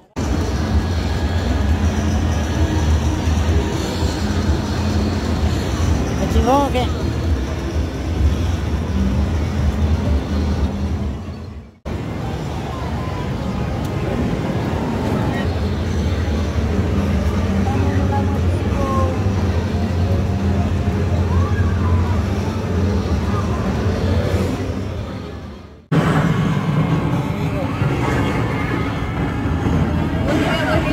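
Busy arcade din: electronic game sounds and music over background chatter, with a steady low hum underneath. It breaks off abruptly twice and picks up again straight away.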